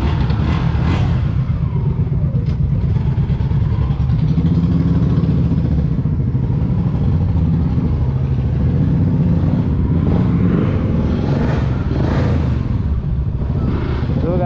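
Suzuki Gixxer 155's single-cylinder engine running as the motorcycle pulls away and rides at low speed, heard from the rider's own bike. The revs rise and fall a few times in the second half.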